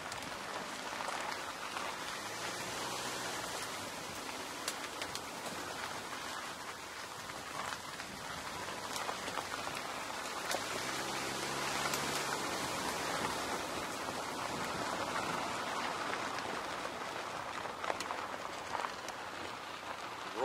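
Car tyres rolling over a gravel road: a steady crackling hiss of gravel under the wheels with scattered clicks of small stones, and the engine's hum coming up faintly twice.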